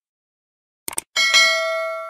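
Subscribe-button animation sound effects: a quick double mouse click just before a second in. A bright notification-bell ding follows, struck twice in quick succession, and keeps ringing as it fades.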